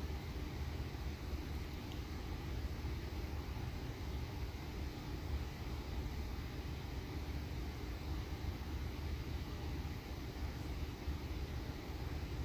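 Steady low background rumble with a faint hum, with no distinct events.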